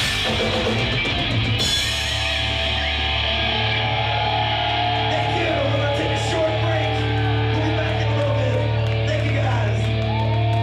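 Hard rock band music: distorted electric guitar, bass and drums with singing. The cymbals and drum hits stop about two seconds in, leaving a long held chord with the voice over it.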